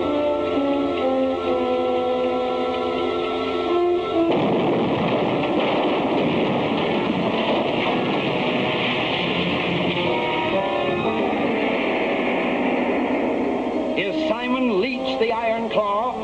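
Held orchestral chords, cut off about four seconds in by a sudden loud blast that runs on as a dense, even rumble of noise for some ten seconds: the explosion of a lit fuse in a mine tunnel. Wavering tones of music come in near the end.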